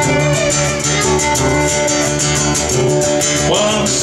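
Live acoustic band playing an instrumental passage: a strummed acoustic guitar keeping a steady rhythm under a bowed fiddle melody.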